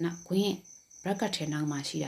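A voice speaking in short phrases, with a pause in the middle, over a thin, steady high-pitched tone.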